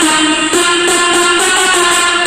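Electronic dance music with a steady beat, played loud through a Tronsmart Element T6 Bluetooth speaker.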